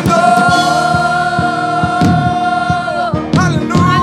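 Live gospel worship music: a singer holds one long note over keyboard and a steady beat, then sings a short run of quick notes near the end.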